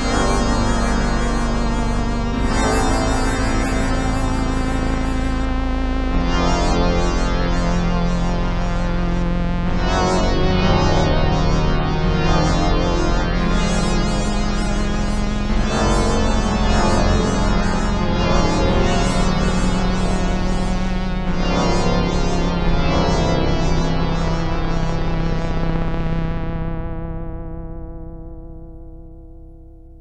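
Yamaha DX7 IID FM synthesizer playing the 'ANALOFIN1' patch: sustained chords changing every few seconds over a held bass note, fading out near the end.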